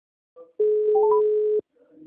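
Telephone ringback tone: one steady beep about a second long, with a few short higher notes stepping upward over it, as the call rings through before it is answered.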